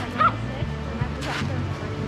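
A dog gives one sharp yip about a quarter of a second in, over steady background music.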